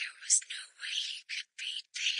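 Whispered speech: a voice whispering in short phrases, all breath with no voiced tone, broken by brief pauses a little over a second in and near the end.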